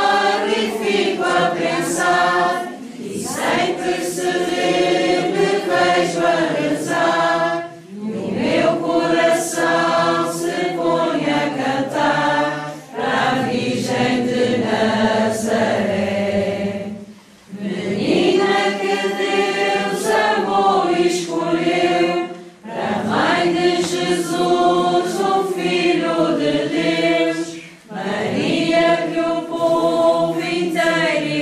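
A group of men and women singing a hymn together, unaccompanied, in phrases of about five seconds with short breaks for breath between them.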